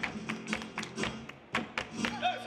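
Live flamenco: sharp hand-clapping (palmas) and a dancer's shoe strikes on the stage, several irregular hits a second, over a Spanish guitar.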